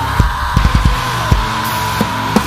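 Drum kit played along to a heavy metal song recording: uneven drum hits over distorted guitars, with one high note held throughout.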